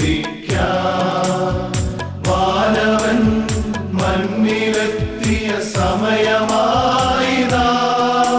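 A Christmas song: men singing a melody over an orchestrated backing with a steady drum beat.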